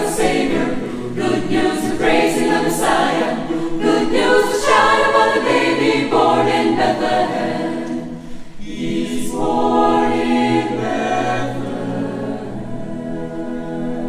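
Mixed choir singing a gospel-style Christmas spiritual in full chords; the sound eases about eight seconds in, then swells again.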